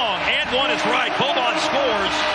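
Basketball court sound: sneakers squeaking in short chirps on the hardwood floor over steady arena crowd noise.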